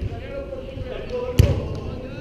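A soccer ball kicked once, a sharp thud about one and a half seconds in, under players' shouts and calls.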